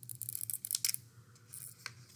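Scissors snipping through a strip of paper: a quick run of short, crisp cuts in the first second, then a couple more snips near the end.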